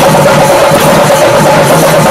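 Loud, continuous temple procession percussion ensemble of Kerala: drums beating over a dense wash of clashing cymbals, with a steady held tone above them.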